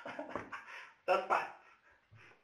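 A dog vocalising: a whine-like call, then two sharp barks in quick succession about a second in.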